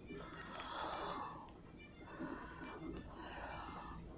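A man breathing close to a phone's microphone during a pause in his talk: two breaths of about a second each, one about half a second in and another about three seconds in.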